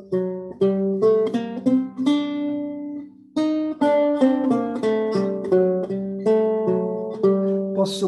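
Renaissance lute played with the right-hand fingertips: a passage of single plucked notes, each left to ring, about three notes a second, with a short break about three seconds in before the line picks up again.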